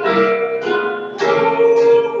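A man singing a slow worship song, accompanying himself on piano, with long held notes.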